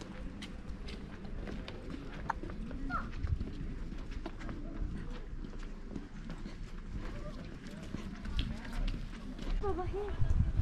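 Faint voices of people around, with many scattered light taps and clicks.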